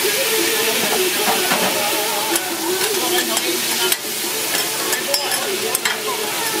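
Razor clams sizzling in oil on a hot flat-top griddle. From about two seconds in, a metal spatula scrapes and clicks against the griddle surface as the clams are stirred.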